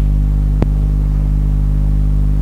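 Steady low electrical hum with evenly spaced overtones, loud and unchanging. A single sharp click comes about half a second in.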